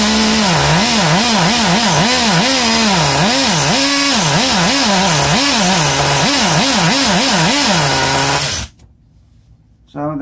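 Small two-stroke nitro glow engine of an RC car running, its revs rising and falling about twice a second. It drops to a low idle near the end and then cuts out suddenly.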